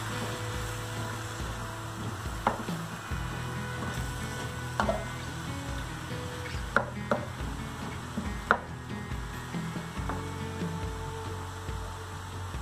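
Diced vegetables sizzling as they sauté in a wok, stirred with a wooden spoon, with a few sharp knocks of the spoon against the pan.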